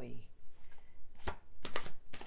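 Deck of tarot cards being shuffled in the hands: one crisp card snap about a second in, then a quick run of snaps near the end.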